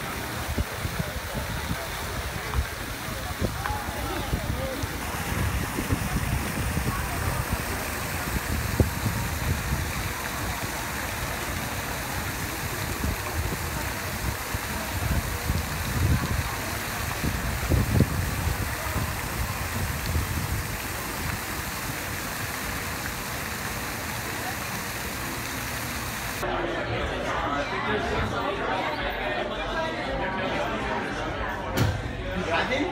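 Fountain jets splashing steadily into a stone basin, with people's voices in the background. Near the end the water sound stops suddenly and gives way to voices in an indoor room.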